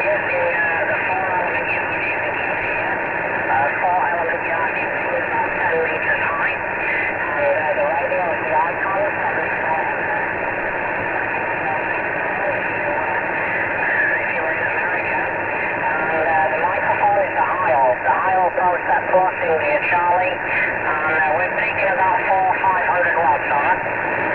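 A distant station's voice received over 11-metre CB radio from England, a long-distance skip contact. It is faint under a steady hiss of band noise and comes through the radio's speaker.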